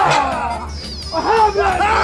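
Loud voices calling out over background music, with a gap about half a second in and fresh calls from about a second in.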